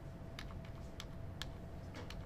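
Faint computer keyboard clicks, about five key presses in two seconds, as a PDF is paged back page by page.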